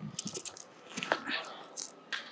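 Hands and trainers striking and scuffing foam gym mats during a cartwheel: a soft thud as it begins, then a run of irregular light knocks and scuffs.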